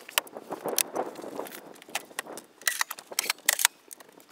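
Scattered sharp clicks, taps and light clinks of someone moving about and handling things inside the rear of a van, busiest about three seconds in.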